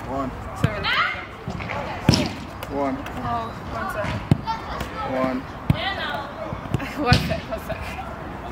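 A football being juggled off the foot and thigh in keepy-ups: a dull thud at each touch, about five touches spaced over a second apart.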